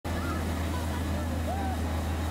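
Ice resurfacing machine's engine running with a steady low drone, with people's voices in the background.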